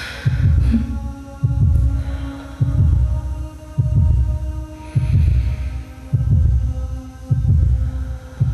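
Electronic stage soundtrack: a deep bass pulse repeating a little slower than once a second over a steady, held drone of several tones.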